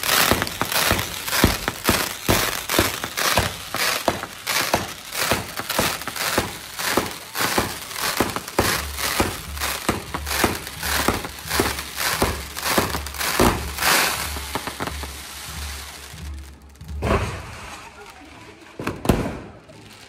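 Fireworks tower (castillo) going off: a rapid, continuous string of sharp bangs and crackles, several a second. They break off about three-quarters of the way through, with a couple of last bursts near the end.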